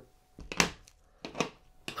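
Fly-tying scissors snipping off the tying thread after a whip finish, two short snips about a second apart, the first louder.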